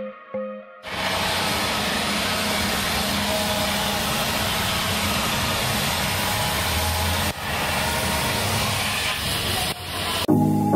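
Oxy-acetylene gas welding torch flame hissing steadily as it welds a sheet-steel cover, with a brief break about seven seconds in.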